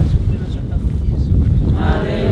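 Wind buffeting the microphone as a steady low rumble, with faint voices under it; a group starts singing a hymn near the end.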